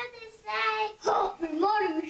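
Children's voices calling out "Happy Mother's Day" in drawn-out, sing-song notes, one held note about half a second in and then a longer wavering phrase.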